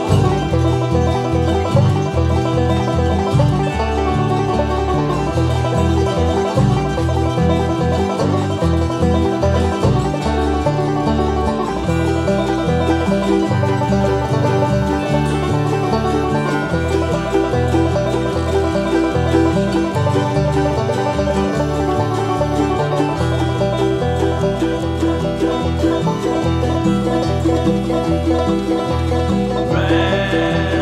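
Progressive bluegrass string band playing, with banjo picking at the fore over guitar and a bass line that steps from note to note.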